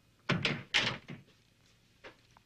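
A door being pushed shut, two loud knocks about half a second apart.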